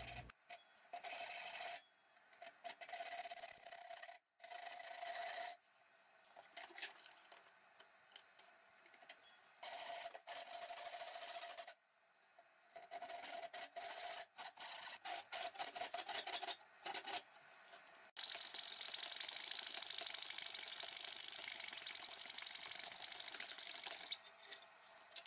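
Hand saws cutting through a maple plank: several short runs of rasping back-and-forth strokes with abrupt breaks between them, then, about eighteen seconds in, a steady run of fast strokes from a coping saw.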